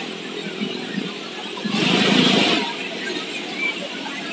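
Road traffic running beside the park, with one vehicle passing loudest about two seconds in, over a steady traffic hum.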